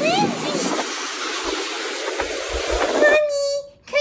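Wind and rain rushing, a dense steady hiss that follows a line of speech in the first second and cuts off suddenly about three seconds in, giving way to a held voice.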